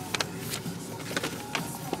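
Handling noise: a paper flyer rustling and the phone rubbing against clothing, with scattered light clicks.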